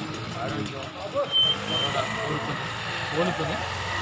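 A man talking into a handheld interview microphone over steady background noise.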